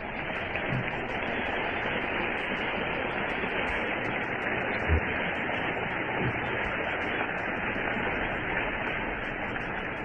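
Steady hiss of an old, band-limited sermon recording, with a few faint low thumps, strongest about five seconds in.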